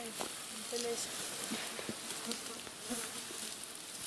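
Outdoor meadow ambience: a steady high hiss, with insects buzzing in the grass, soft rustles and a few light ticks. A faint brief voice comes in just before a second in.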